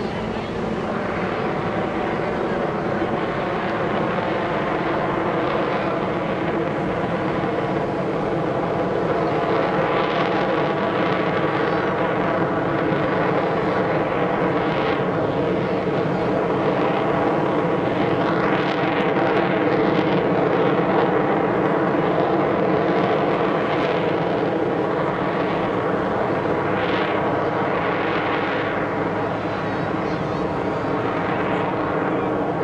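Jet Waco biplane (Taperwing Waco with a radial piston engine and a jet engine slung underneath) flying aerobatics: a steady engine and propeller drone with several held tones, growing louder toward the middle and easing off near the end.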